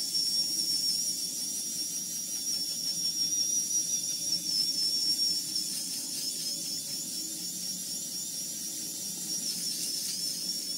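Remington Balder Pro electric head shaver running against the side of the scalp, shaving off stubble. Its motor gives a steady high-pitched whine that wavers slightly, with a hiss over it and a low hum beneath.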